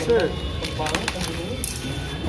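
Bubble wrap and plastic film crinkling in short bursts as a utility knife slits packing tape, with voices in the background.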